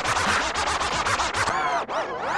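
Breakbeat DJ mix with turntable scratching on a vinyl record: a quick run of chopped strokes, then rising-and-falling pitch sweeps near the end.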